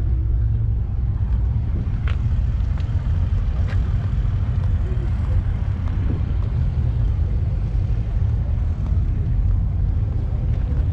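Steady wind rumble buffeting the camera microphone, with a few faint clicks and distant voices.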